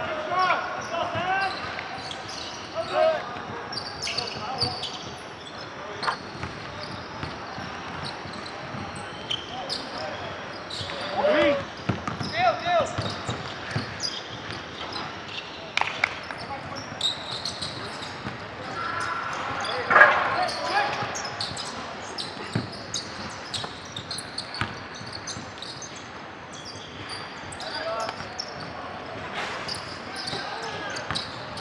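A basketball bouncing and dribbling on a hardwood gym floor during a game, in a short sharp beat of knocks. Players' voices call out now and then, loudest about two-thirds of the way in.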